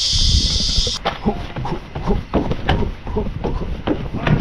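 Chorus of cicadas giving a loud, steady, high-pitched buzz that cuts off suddenly about a second in. After it come low rumbling noise and scattered knocks.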